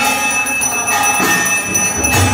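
Aarti bells ringing continuously, a steady shimmer of many overlapping high ringing tones.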